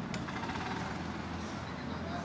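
Street traffic: a motor vehicle's engine running with a steady low rumble.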